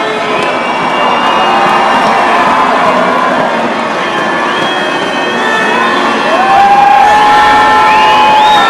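Spectators cheering swimmers on during a race, a dense mass of shouting voices. About six seconds in, a long held note rises above the crowd.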